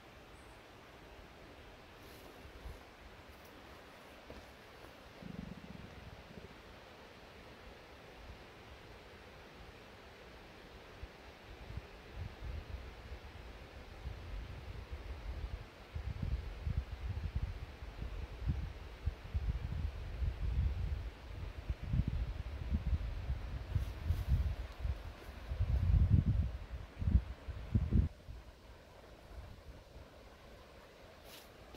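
Quiet outdoor ambience, then irregular low rumbling buffeting on the camera microphone from about twelve seconds in, loudest near the end.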